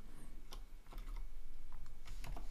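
A few faint, irregular clicks from a computer keyboard and mouse.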